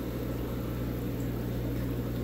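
Pond pump running: a steady low electric hum with a faint hiss of moving water.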